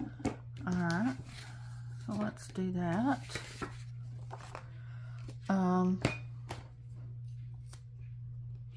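A woman hums a few short wordless phrases, three or four, while small clicks and rustles come from stickers, tweezers and a clear plastic card being handled on a planner page. A steady low hum runs underneath.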